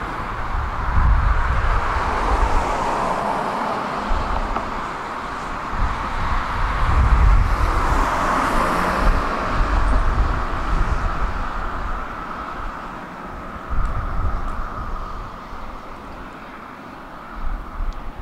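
Road traffic passing on the adjacent road: a rushing tyre-and-engine noise that swells twice and then fades away in the second half, with gusts of wind buffeting the microphone.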